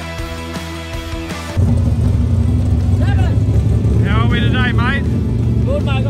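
Background music, cut off suddenly about a second and a half in by a loud, steady low rumble of a car engine running, with voices over it.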